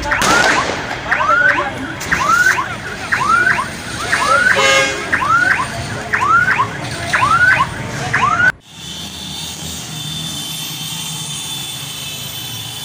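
Electronic siren wailing in a fast repeated whoop, each note sweeping upward, nearly twice a second. It cuts off abruptly about eight and a half seconds in, giving way to steady street noise.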